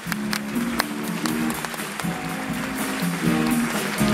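Student big band playing a gospel-tinged soul-jazz tune, in a quieter passage where guitar and the rhythm section come to the fore after the brass drops back; the full band swells louder again at the very end.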